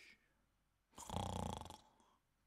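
A person snoring: one drawn-in snore with a fine, rapid rattle, lasting just under a second and starting about a second in. It comes from a character who has dozed off mid-session.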